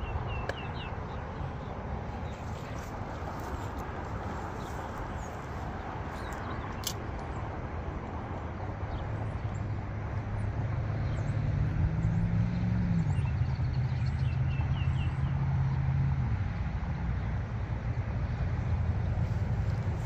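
Outdoor wind rumble on the microphone, with a low engine drone that swells from about ten seconds in, rises briefly in pitch, and fades near sixteen seconds. A few faint bird chirps and a single click are also heard.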